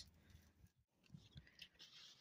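Near silence: faint room tone, with a brief complete dropout partway through.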